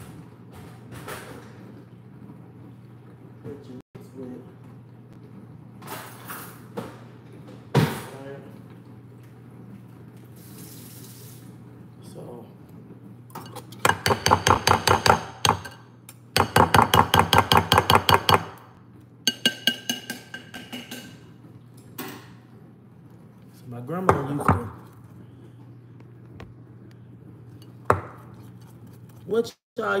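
A utensil beating batter in a glass mixing bowl, clinking rapidly against the glass in two runs of about eight strokes a second around the middle, with scattered knocks of dishes on the counter before and after.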